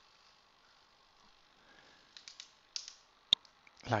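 A few faint light clicks about two seconds in, then one sharp click a little after three seconds, over quiet room tone.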